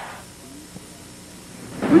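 Background noise fading out over the first moment, leaving a faint steady hiss; a man's voice starts right at the end.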